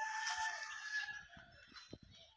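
A rooster crowing: one long, steady call lasting a little over a second, over a faint hiss.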